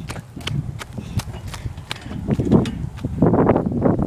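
Footsteps crunching on wood-chip mulch, a quick even run of steps, about two to three a second, picked up close by a hand-held phone with some handling rumble.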